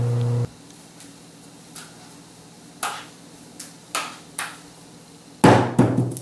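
A steady held hum that stops half a second in, then a quiet room with about five sharp single knocks spread over three seconds. Near the end comes a much louder bang with a short rattle.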